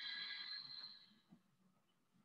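A brief high-pitched ringing tone with several steady pitches at once. It starts suddenly and fades out within about a second.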